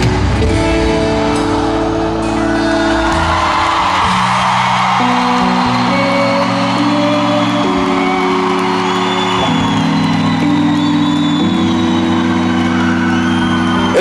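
A live pop band holds long closing chords that change every second or two, while the crowd cheers and whoops over the music.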